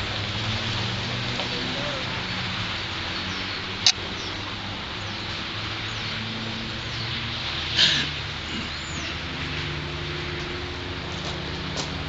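Outdoor background of indistinct distant voices over a steady hiss, with a single sharp click about four seconds in and a short noisy burst near eight seconds.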